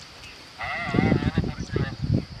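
A bleating farm animal giving one long wavering call that starts about half a second in and lasts over a second.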